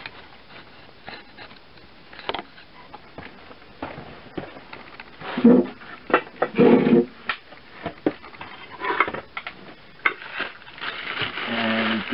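Handling noises as a potter gets set up at the wheel: scattered knocks and clicks, two louder muffled thumps about halfway through, and plastic rustling toward the end as a bagged lump of clay is handled.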